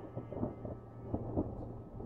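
Rumbling thunder with irregular cracks over a steady low drone of ambient background music; the thunder dies away about a second and a half in, leaving the drone.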